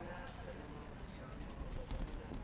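Faint outdoor football-pitch ambience: distant players' voices calling over a low, steady rumble of wind on the microphone.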